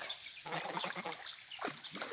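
Young domestic geese swimming in shallow water, giving faint, soft calls, with light water splashing as they feed at the reeds.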